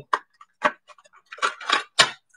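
A handful of light clicks and taps, irregularly spaced, from small items being handled on a tabletop, the last one the loudest.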